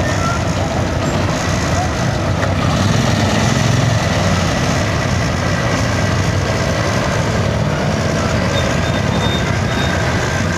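Motorcycles with sidecars riding slowly past one after another, their engines running at low speed in a steady continuous din.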